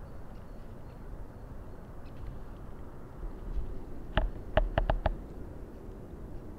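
Outdoor ambience with wind rumbling on the microphone. A little after four seconds in, a quick run of five short, sharp sounds follows within about a second.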